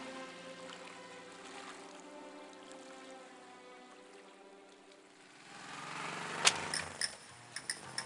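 Background music of held chords fading away, then a rush of noise and a sharp thud about six and a half seconds in as a bundle of newspapers is tossed onto the ground, followed by a few light clicks.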